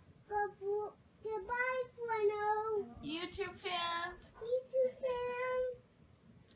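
A child singing in a high voice: several short phrases of held and gliding notes, with brief pauses between them.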